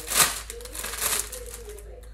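Clear plastic packaging crinkling as a bag is pulled open and a pet collar on a card is taken out, loudest in a burst just after the start and again about a second in.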